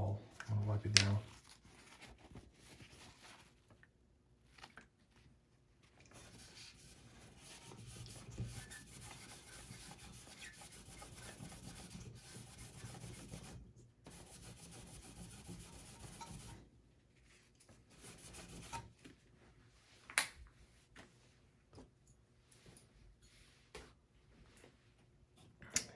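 Paper napkin rubbing over the CPU's metal heat spreader, wiping off old thermal paste: a steady scrubbing for about ten seconds, then a few shorter wipes. A sharp click sounds near the end.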